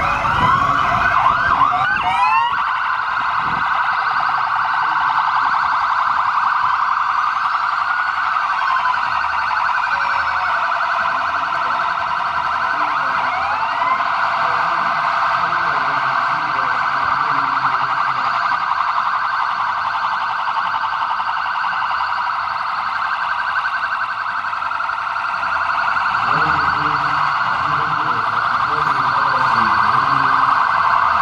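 Several police vehicle sirens wailing at once as a convoy drives past, their overlapping rising and falling tones blending into one continuous wail. A few separate sweeps stand out in the first couple of seconds.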